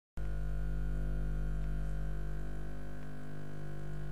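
Steady electrical mains hum with many evenly spaced overtones, starting abruptly right at the beginning and holding at one level throughout.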